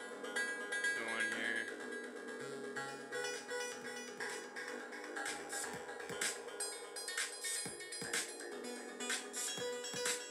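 Eurorack modular synthesizer playing a randomly gated electronic pattern through studio monitors: plucked synth notes with reverb and delay, joined by short drum clicks and bass punches that drop in pitch, which come more often in the second half.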